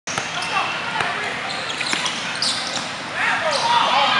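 Basketball dribbled on a hard court floor, a few bounces about a second apart, with spectators' voices and calls behind it.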